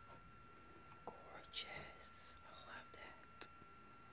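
A person whispering or speaking very softly, starting about a second in and ending about half a second before the end, with hissy 's' sounds. Under it is a quiet room with a faint steady high whine.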